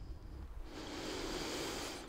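Faint, steady outdoor background hiss with no distinct event, growing slightly fuller after about half a second.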